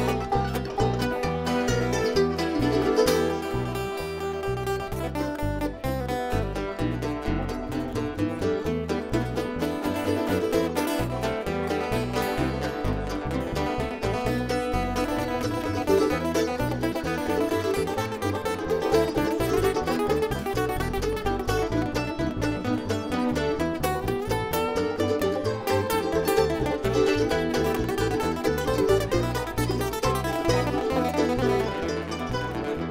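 Bluegrass band playing an instrumental break on banjo, acoustic guitar, mandolin and upright bass, with the bass keeping a steady beat.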